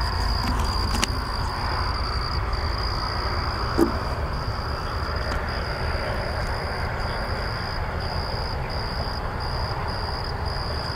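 Crickets chirping in a steady high trill with brief breaks, over a constant low rumble.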